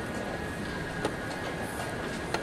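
Steady room noise of a large chess tournament hall, a hiss with a faint high steady tone, and one sharp click about a second in.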